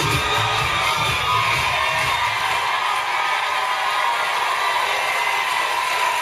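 Pop dance music with a heavy beat that stops about two and a half seconds in, giving way to a studio audience cheering and applauding.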